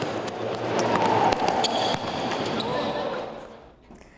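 Futsal training on an indoor court in a large hall: sharp ball strikes and knocks over running footsteps and players' voices. The sound fades out near the end.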